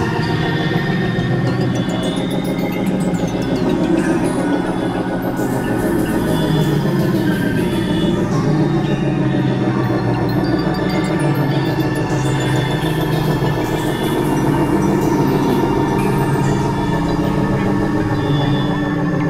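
Experimental electronic music from synthesizers: dense, layered drones of many sustained tones that shift slowly in pitch, loud and continuous with no pauses.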